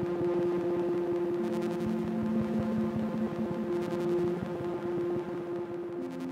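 Ambient drone from a Make Noise Strega patched with a Sunbox: several sustained, overlapping synth tones under a grainy, flickering noise texture. A lower tone comes in about a second and a half in and drops out around the middle.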